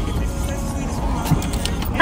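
Phone microphone handling noise, the phone rubbing against a hoodie and giving a steady low rumble, with faint background music underneath.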